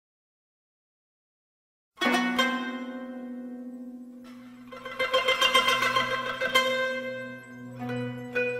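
Instrumental music on a plucked string instrument. After about two seconds of silence it comes in with a strong plucked chord that rings and fades. From a little past halfway, a quicker run of plucked notes plays over a low held tone.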